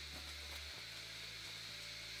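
Quiet room tone: a faint steady low hum with light hiss, and no distinct sounds.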